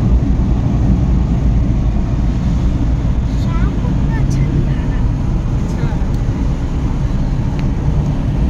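Steady, loud low rumble of road and wind noise inside a car moving at highway speed, with faint voices in the middle.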